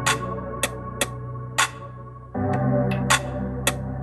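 Electronic music with a synth bass line and sharp drum-machine hits, played through a weatherproof 6x9 coaxial speaker on a test bench. The bass steps up and gets louder about two and a half seconds in.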